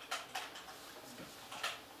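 Computer keyboard keys pressed a few times while a command is typed: separate sharp clicks, two close together near the start and one more near the end.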